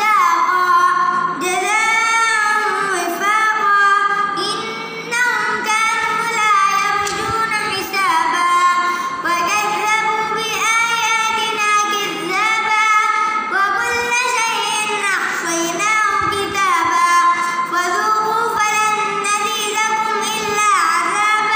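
A nine-year-old boy reciting the Quran in melodic tilawah style: a solo child's voice drawing out long phrases whose pitch glides and bends, with short pauses for breath between them.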